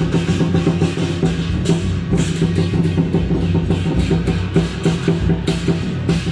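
Lion dance percussion: a big drum beaten in a fast, steady rhythm with clashing cymbals.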